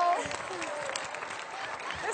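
Studio audience applauding, with voices mixed in.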